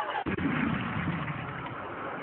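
Bin lorry engine running, a low rumble that comes in suddenly about a quarter second in and fades over the next second and a half.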